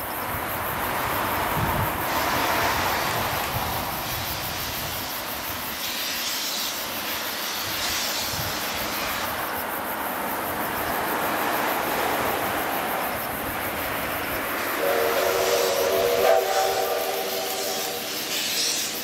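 C57 steam locomotive working hard as it approaches, its exhaust a steady rush that swells and eases, with its steam whistle sounding a steady chord for the last few seconds.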